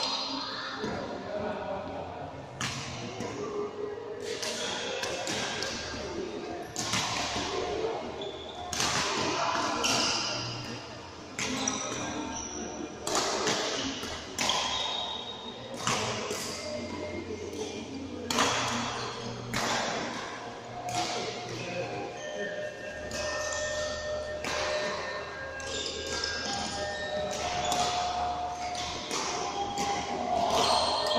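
Badminton rackets striking shuttlecocks in rallies, a sharp hit every second or two, in a large sports hall.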